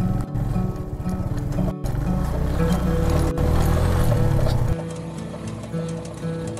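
Background music over a Suzuki motorcycle's engine running with a fast, rhythmic low pulsing as the bike rides a rough dirt track. The engine sound drops away about three-quarters of the way through, leaving the music.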